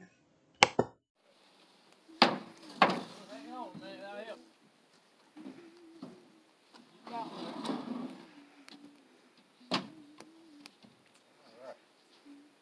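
Several sharp knocks from work on a wooden cabin: two in quick succession near the start, two more around two to three seconds in, and one near ten seconds, with people talking in the background.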